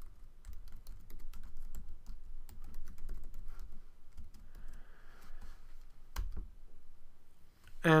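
Typing on a computer keyboard: a run of quick, irregular keystrokes, with one louder key press about six seconds in.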